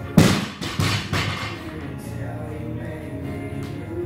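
Barbell loaded with green bumper plates dropped from waist height onto the gym floor after a set of thrusters: one loud crash just after the start, then two smaller bounces within the next second. Background music plays throughout.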